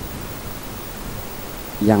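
Steady background hiss in a pause in a man's speech over a microphone and loudspeaker; his voice comes back in near the end.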